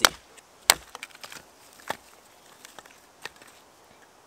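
Wooden baton striking the spine of a stainless-steel Mora Bushcraft knife driven into a dry log, splitting it: a sharp knock at the start and a louder one under a second in. Fainter knocks of wood follow about two and three seconds in.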